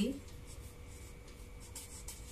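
Whiteboard marker writing on chart paper: faint scratching strokes, a few of them clustered near the end.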